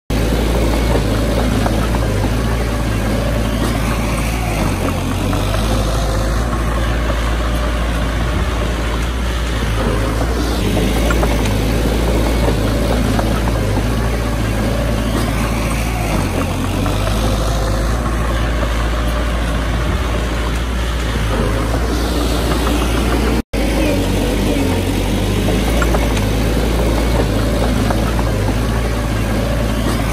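Small crawler bulldozer's diesel engine running steadily under load as it pushes a pile of soil. The sound breaks off for an instant about two-thirds of the way through.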